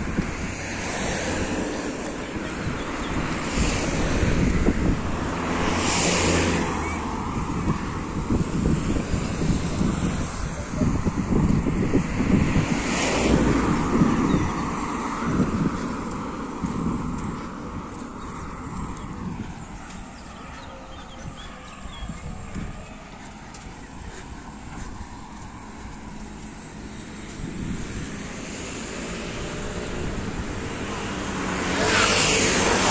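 Road traffic on a street, with cars passing close by. Two of them swell up and fade away, about six and thirteen seconds in, and the traffic is quieter for a while after that.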